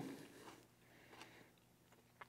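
Near silence: room tone, with a hummed "mmm" fading out at the very start and two faint, brief soft sounds later on.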